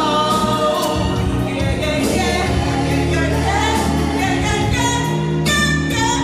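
A woman singing a slow gospel-style R&B song live with a band. Her voice slides through long, wavering notes over a steady bass line and drums with cymbals.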